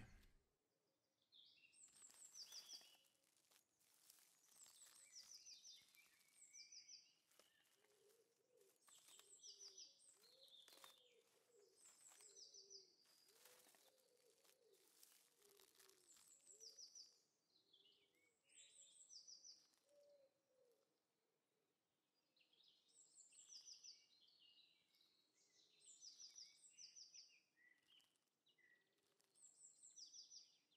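Very quiet woodland ambience with faint birdsong: short high chirps, often in pairs, repeating every second or two throughout. Lower calls come in through the middle stretch, with a few scattered faint clicks.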